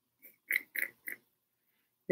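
A woman's short laugh: four quick chuckles about a third of a second apart, the first faint.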